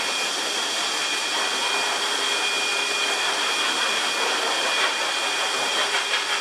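Pet grooming dryer running steadily: a loud, even rush of blown air with a high whine over it.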